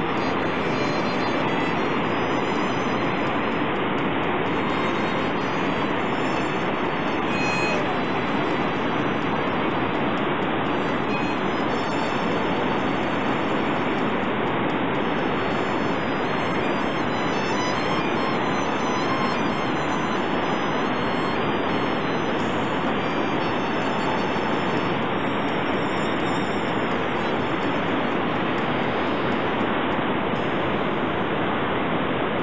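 Steady roar of the Iguazú Falls, a huge volume of water plunging into the gorge, with background music playing faintly over it.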